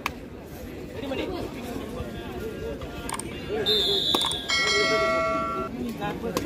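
Spectators' voices and chatter around a kabaddi court. About three and a half seconds in, a high steady tone sounds for about a second, followed by a louder ringing tone with several overtones that stops just before the end.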